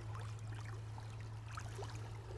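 Faint splashing and trickling of shallow stream water as a dip net is held in the current and a hand stirs the streambed just upstream of it, over a steady low hum.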